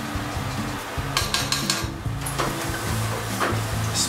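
Background music, with sharp clicks of metal tongs against a skillet as asparagus is handled: a quick run of clicks about a second in, then a couple of single clicks later.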